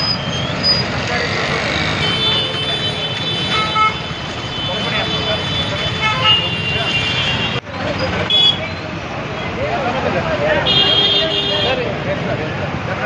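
Roadside crowd talking over traffic noise, with vehicle horns sounding: one long horn blast in the first half and another short one near the end.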